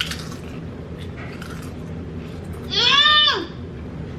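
A single high-pitched wordless vocal cry, like a drawn-out "ooh", about three seconds in, rising and then falling in pitch. Before it there are faint crackles of potato chips being crunched.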